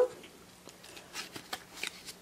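Faint handling noises: a few soft rustles and light clicks as the glass grinder and its card hang-tag are turned over in the hand.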